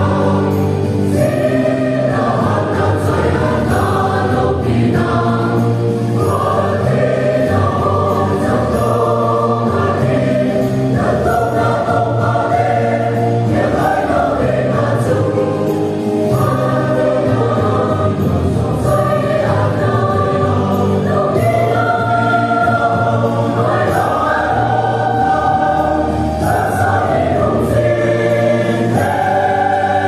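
Mixed choir of men and women singing a hymn together, with held notes that change every second or so and no break.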